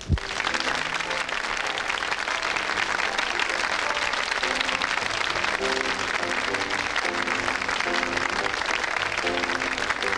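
A studio audience applauding. The applause breaks out all at once and holds steady, with a music tune playing underneath.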